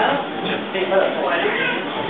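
People's voices talking, with a high-pitched voice rising and falling in pitch about halfway through.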